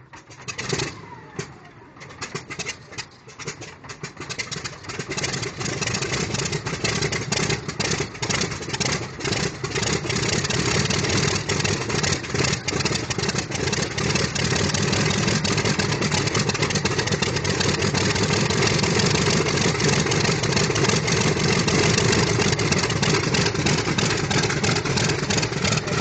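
Pratt & Whitney R-2800 eighteen-cylinder radial engine of a Grumman F7F Tigercat starting up: it fires unevenly at first, coughing and catching over several seconds, then builds into a loud, steady run.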